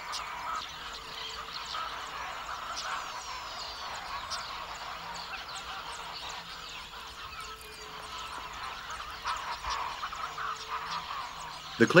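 Many birds chirping and calling at once, a busy steady chorus of short overlapping notes with a few higher falling whistles.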